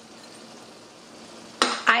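Faint steady hiss of room tone with no distinct knocks or clicks; a woman's voice begins near the end.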